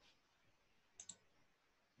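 Near silence broken by a quick double click of a computer mouse about a second in.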